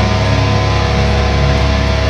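Extreme metal band playing live at full volume: heavily distorted electric guitars and bass in a dense, steady wall of held, ringing notes.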